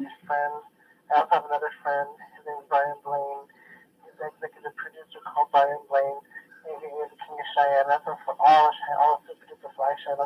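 A man's voice from an old home recording of his rhymes, played back through a small stereo speaker, sounding thin like a radio, with no beat under it.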